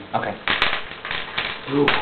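Dice clattering on a tabletop: a few quick, sharp clicks, as for a roll on an intimidation check.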